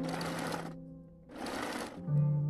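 Electric sewing machine stitching in two short runs of about half a second each, with a brief stop between them, as lace trim is sewn onto fabric.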